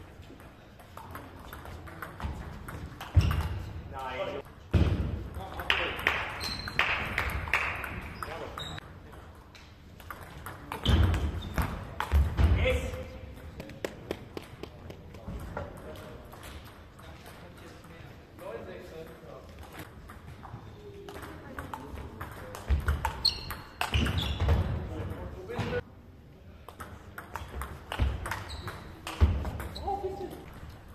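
Table tennis ball clicking back and forth between paddles and table in quick rallies, in a large sports hall, with voices in between points.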